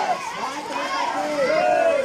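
A group of boys' voices calling out together, many overlapping voices at once, as in a crowd chanting slogans.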